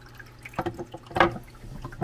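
Water trickling in an ExoTerra resin waterfall while a resin rock piece is pushed into place on it. Hard knocks come about half a second in and again, loudest, a little over a second in.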